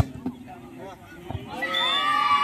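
A volleyball smacked hard on a jump serve, one sharp hit at the very start, over a steady chatter of spectators. About a second and a half in, several voices shout out together in a long, held call.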